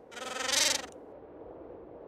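A short sound effect, under a second long, that grows louder and then stops abruptly.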